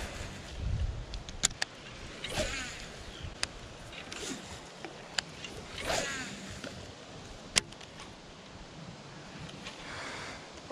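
Faint handling sounds of a baitcasting rod and reel being worked, with a handful of sharp clicks spread through and two short squeaks about two and a half and six seconds in.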